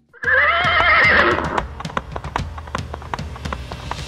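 Sound effect of a horse whinnying for about a second and a half, followed by a steady clip-clop of hooves, dubbed over a toy horse and carriage being moved.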